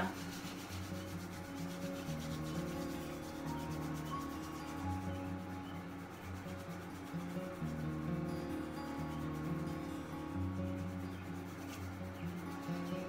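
Two hands rubbing palm against palm to create friction, a continuous rubbing through the whole stretch, over soft background music of low held chords.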